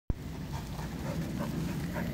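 A dog making soft vocal sounds over a steady low rumble.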